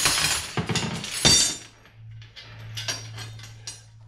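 Steel Bridger #5 coil-spring beaver trap and its hand setters clanking and rattling against a cluttered metal workbench as they are handled: a loud burst of metal clatter over the first second and a half, then lighter scattered clinks.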